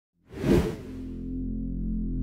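An intro whoosh sound effect swells and fades about half a second in. It leaves a low, steady musical drone that slowly grows louder.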